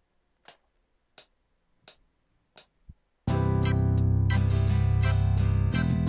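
Four evenly spaced metronome clicks, a little under a second apart, counting in a recording in FL Studio. Then, just over three seconds in, the loop starts playing loud: a beat with bass, guitar-like plucked chords and hi-hats, as offbeat chord stabs are recorded on the Akai Fire pads.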